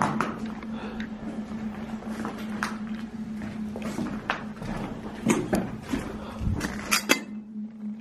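Footsteps over plaster debris and rubble on a floor, with scattered clicks and clinks of loose pieces and a few louder knocks about five and seven seconds in, over a steady low hum.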